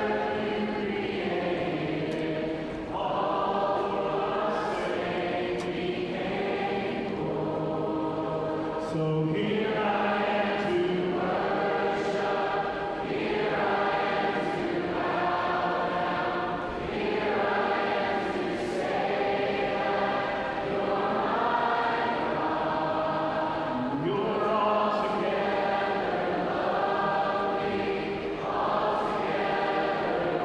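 A large crowd of voices singing a praise song together as a congregation, in slow phrases of held notes.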